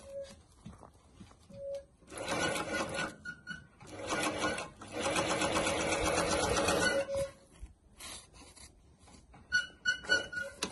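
Peter KL-8530 single-needle walking-foot zigzag industrial sewing machine stitching neoprene, running in three short bursts of a second or two each and stopping between them as the work is turned on the cylinder arm.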